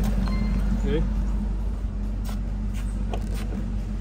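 A 1999 Ford Mustang's engine idling steadily under remote start, with a couple of short clicks in the second half.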